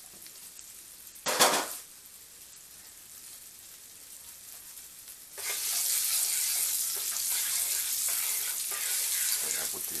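Curry shrimp sauce simmering in a frying pan, a faint hiss broken by one brief loud knock about a second and a half in. About five seconds in, a wooden spoon starts stirring the sauce and a loud, steady sizzle takes over as it is pushed around the hot pan.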